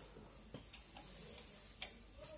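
Quiet room with a few faint clicks; the sharpest, near the end, is the room's light switch being flipped off.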